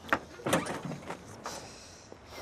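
A car bonnet being unlatched and lifted by hand: a sharp metal click near the start, then a few lighter knocks and a scrape as it goes up.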